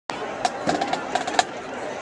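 A quick run of sharp wooden percussion knocks with a clear pitch, about nine in a second, the first and last the loudest, over a steady murmur of crowd voices.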